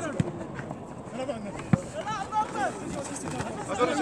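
Players' voices calling across a football pitch, with two sharp knocks, the first as a football is kicked just after the start and the second about a second and a half later.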